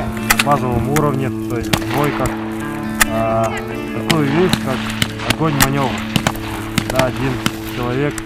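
Background music with a sustained drone and a voice line, with sharp rifle shots cracking at irregular intervals throughout.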